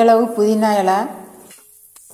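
A woman speaking for about the first second, then quiet near the end.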